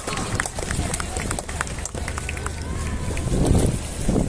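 Crowd applauding at an outdoor event: scattered hand claps, with a low rumble swelling near the end.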